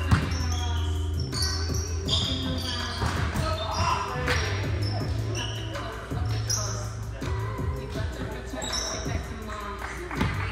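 Indoor volleyball play on a hardwood gym floor: sharp hits and bounces of the ball, the loudest right at the start, and many short, high-pitched sneaker squeaks, heard over players' voices and background music in a large gym hall.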